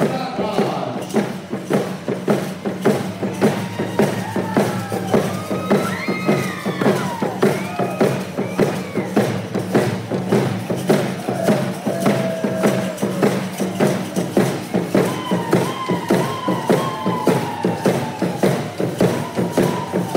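A handgame song: frame hand drums beaten in a steady quick rhythm while a group sings and calls over them, voices rising and falling.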